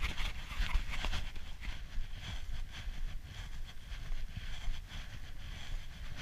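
Irregular crunching and knocking of travel over packed snow on a forest trail, over a steady low rumble of handling or wind noise on the camera's microphone.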